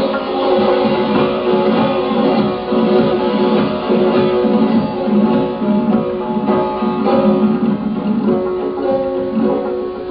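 Classical Persian music played on a tar, the long-necked plucked lute, sounding a continuous melody of plucked notes.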